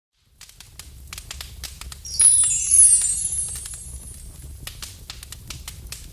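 Sound effect for a fire logo intro: a crackling like burning fire over a low rumble, with a loud shimmering sweep that falls in pitch about two seconds in and dies away over a second or so.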